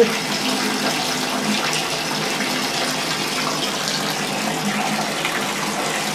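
Water running steadily from a bathtub faucet into a partly filled tub.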